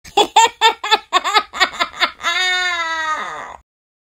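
A high voice giggling in a fast run of about nine 'ha' syllables, then one long held 'yeah' that slowly sinks in pitch and cuts off: a vocal intro sting.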